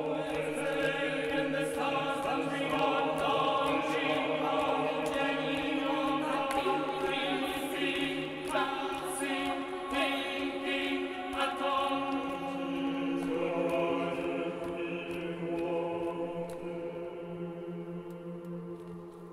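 A vocal ensemble sings held, overlapping chords over a sustained low note. Some voices glide in pitch now and then, and the singing grows softer near the end.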